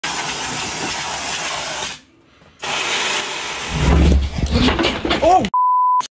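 Canned compressed air sprayed in two long hisses with a short break between them. A person's voice follows, cut off near the end by a steady censor bleep.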